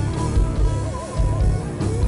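Heavy metal band playing live: distorted electric guitars over bass and drums, with a held lead melody that wavers with vibrato about a second in.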